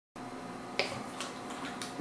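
Idle electric guitar amplifier's faint hiss and hum, with a few soft clicks, the sharpest a little under a second in.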